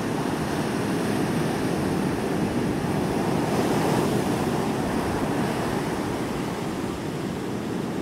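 Ocean surf breaking and washing up a sandy beach: a steady rush of waves.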